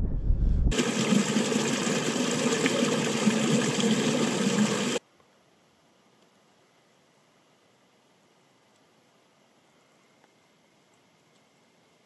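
Lake water lapping and rippling close to the microphone, a steady rush that cuts off suddenly about five seconds in, leaving near silence.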